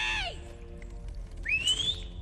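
A woman straining against chains gives a short pitched cry at the start and a rising, high-pitched whimper near the end, over the low, steady drone of the film score.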